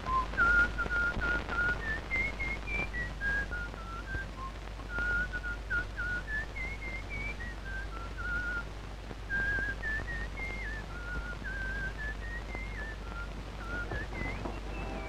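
Someone whistling a tune: clear single notes stepping up and down, held briefly, with a slight waver on some of them, over the steady hiss of an old soundtrack.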